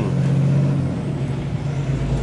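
Kenworth T680 truck's diesel engine running with a steady low hum, heard from inside the cab.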